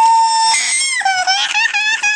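Toddler crying in a tantrum: one long high-pitched wail, then from about a second in a run of short sobbing cries.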